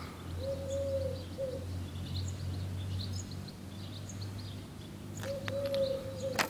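Birds calling outdoors: a small bird's short high chirps repeating every fraction of a second, and twice a lower, drawn-out cooing note, near the start and again near the end, over a steady low hum.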